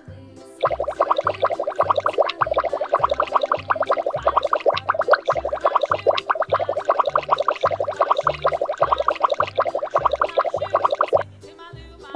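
A rapid bubbling sound effect, a dense stream of quick bubbly pops, starts about half a second in and stops about a second before the end. It plays over children's background music with a steady bass beat.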